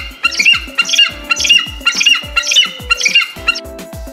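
Children's background music with a steady drum beat. Over it, a short high animal call repeats about twice a second; it is presented as the giraffe's call.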